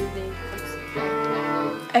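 Guitar chords ringing out: one chord fades, another is struck about halfway through and dies away.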